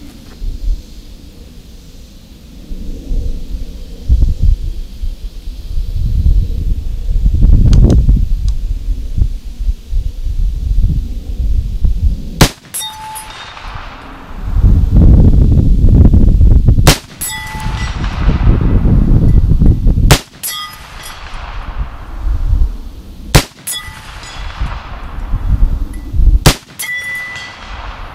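Five rifle shots from a .50 Krater with a muzzle brake, firing 300-grain Hornady FTX bullets, spaced about three seconds apart in the second half. Each shot is followed by the ringing ping of a steel plate target being hit. A low rumbling noise comes and goes before and between the shots.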